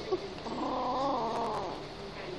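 Kitten growling: one drawn-out, wavering growl starting about half a second in and lasting just over a second, a possessive warning to guard its treats.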